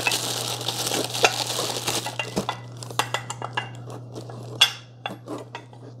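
Plastic wrapping crinkling as it is pulled off a monitor-arm clamp base, then a string of light clicks and knocks as the bare metal-and-plastic part is handled, the sharpest about four and a half seconds in. A steady low hum runs underneath.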